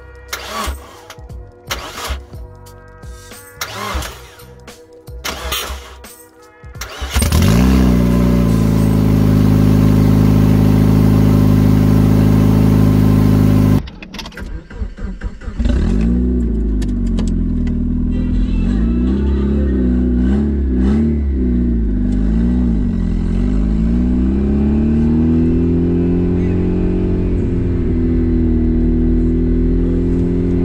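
Irregular sharp clicks and knocks, then about seven seconds in a turbocharged Mazda Miata four-cylinder engine starts and runs loudly at a steady speed through its short hood-exit exhaust. After a break the engine is heard under way, its pitch rising and falling as it is revved up and eased off through the gears.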